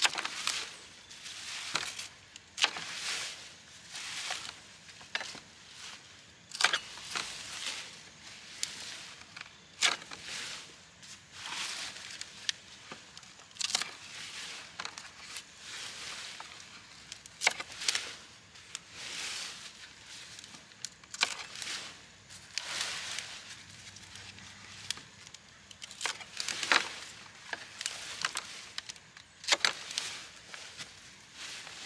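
Turnip tops being cut off with a knife: repeated rustling of the leafy greens and crisp snapping cuts, about one every second or two, as the roots go into a plastic crate.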